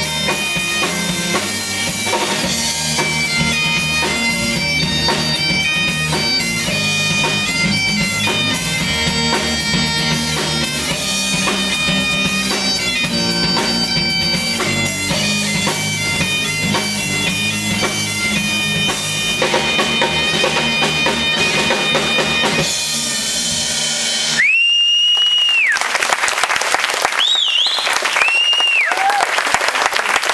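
Live Celtic rock band: Scottish Highland bagpipes playing a melody over their steady drone, backed by electric guitar and drum kit, until the tune ends about three quarters of the way through. Then the audience applauds, with several long, high-pitched whistles.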